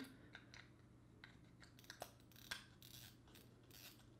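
Near silence with faint, scattered small clicks and light rubbing as the line-filled spool is fitted back onto a spinning reel by hand.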